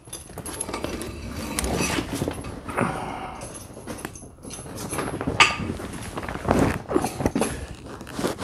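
A western saddle being carried and set onto a horse's back over pads: irregular rustling, knocks and clinks of leather and metal hardware.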